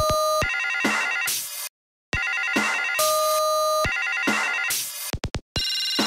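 Electronic music built on telephone-ring sounds: a held two-tone phone note alternates with a fast trilling ring, with noisy swells between the sections. It drops out to silence briefly about two seconds in, and a run of sharp clicks comes just before the end.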